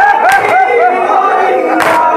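A group of men chanting a nauha, a Shia mourning lament, in unison behind a lead reciter on a microphone. Their hands strike their chests together twice, about a second and a half apart, the second strike louder near the end.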